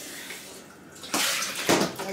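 Plastic bag of cut watermelon rustling as it is handled. It is soft at first, then grows louder with two sharp crinkles in the second half.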